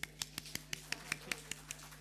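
One person clapping quickly and evenly, about five or six claps a second, stopping shortly before the end.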